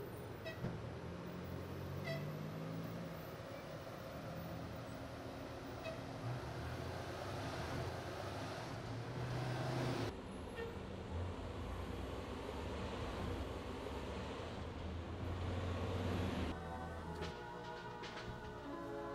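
City street traffic: cars and trucks passing with engines running, and a few short high-pitched toots. Music starts near the end.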